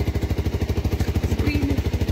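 A motorcycle engine idling with a steady, rapid, even pulse.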